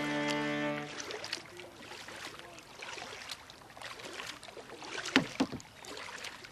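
Held chords of background music stop about a second in, leaving canoe paddle strokes: the blade dipping and pulling through the water with dripping and splashing. Two louder strokes stand out near the end.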